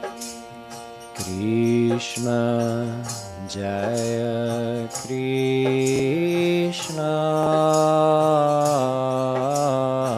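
Man singing a Hindi devotional chant in traditional style to his own harmonium. The harmonium sounds alone at first, and the voice comes in about a second in with long held notes and slides between them, over a light steady beat.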